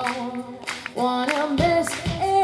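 Female singer performing live with a band: sung notes held and sliding in pitch, with drum hits underneath.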